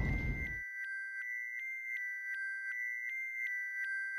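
Electronic soundtrack tones: a steady high two-tone drone with a soft blip repeating about three times a second, like a sonar ping. A noisy rush fades out in the first half second.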